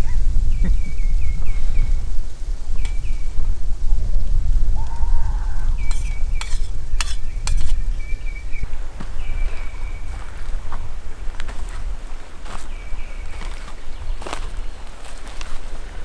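Steady low rumble of wind on the microphone, with faint, short, high chirping calls repeating now and then and a few sharp light clicks a little past the middle.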